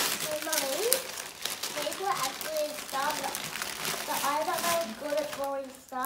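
Gift-wrapping paper crinkling and rustling as a present is unwrapped, loudest right at the start, with voices talking over it.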